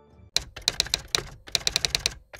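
Typing sound effect: rapid keystroke clicks in quick, uneven runs, starting about a third of a second in.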